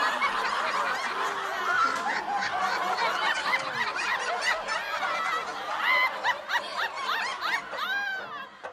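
An audience laughing, many voices overlapping in a sustained wave of laughter.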